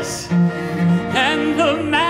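Bowed cello playing a phrase over piano accompaniment: two low held notes, then a melody with vibrato from about halfway through.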